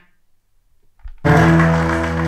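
A second of quiet, then music starts suddenly about a second and a quarter in, played through an Audiolab 8000SE integrated amplifier into B&W loudspeakers and heard in the room.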